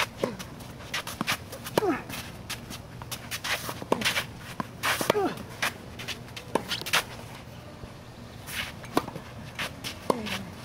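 A tennis rally on a hard court: sharp pops of racket strikes and ball bounces every second or so, with footsteps. Several strokes come with a short grunt that falls in pitch.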